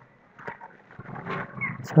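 A quiet pause in a man's voice-over narration, holding only faint breath and mouth noises.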